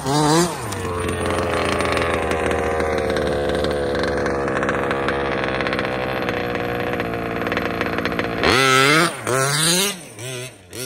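The two-stroke gas engine of a Losi DBXL 2.0 1/5-scale RC buggy revs up at the start, then holds a nearly steady note for about eight seconds. Near the end it revs up sharply twice in quick succession.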